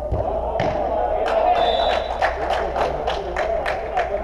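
Echoing voices of players in a large indoor sports hall, with a quick, even run of about ten sharp claps, roughly four a second, through the middle, and a dull thud at the start.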